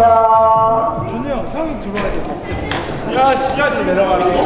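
People's voices calling out across a basketball court, starting with one drawn-out call, then overlapping, shifting voices. Two sharp knocks come about two and about three seconds in.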